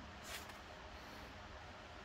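Faint steady background with one short hiss about a third of a second in, made by the climber mid-move on the boulder.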